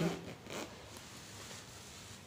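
Zipper slider pulled along a zipper on a fabric pouch, a short rasp about half a second in; the slider has just been fitted onto the chain and runs easily.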